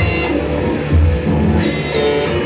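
A band playing loud live music, with bass and drums under guitar.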